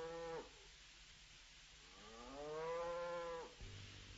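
A cow mooing: the end of one long moo about half a second in, then a second long moo of about a second and a half that rises in pitch, holds and falls away.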